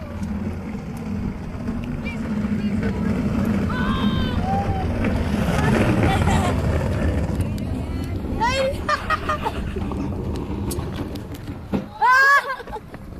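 A wheelie bin's wheels rumbling steadily over the ground as it rolls fast with riders on it, loudest around the middle, with people's voices calling out over it a few times.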